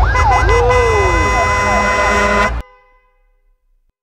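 Dramatic sound effect of several wailing, siren-like tones gliding up and down over a deep rumble and steady high tones. It cuts off abruptly about two and a half seconds in, leaving near silence.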